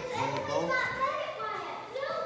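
Children's voices talking, with no words made out.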